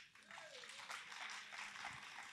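Faint applause from a seated audience: a soft patter of many hands clapping.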